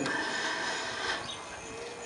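Short pause in a man's speech: the tail of his voice fades away in reverberation, leaving faint, steady background noise.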